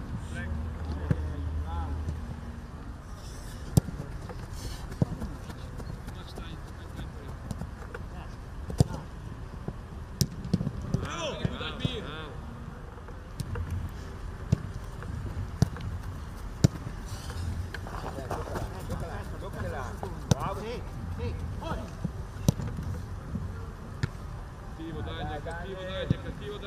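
Footballs being kicked: sharp single thuds of boot on ball, one every second or two, with shouting voices across the pitch now and then.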